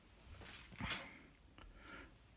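Quiet handling of the metal airgun regulator on a foam mat, with one soft knock a little under a second in and a fainter tick after it.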